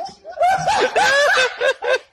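Hearty human laughter: a quick run of short bursts, each rising and falling in pitch, after a brief gap at the start.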